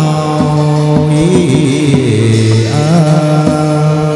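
Chầu văn ritual music: a chanting voice with held, wavering notes over a plucked moon lute (đàn nguyệt), punctuated by sharp percussive clicks.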